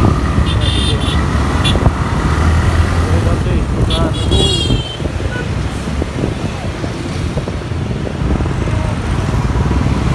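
Motor vehicle running on the road, a steady low rumble of engine and road noise. A short high-pitched tone comes about four seconds in.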